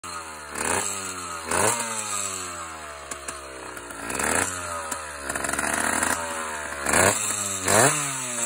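A 70cc two-stroke bicycle engine with an expansion-chamber exhaust running on its first start, revved in quick throttle blips. There are about five, each rising sharply in pitch and then dropping back slowly toward idle.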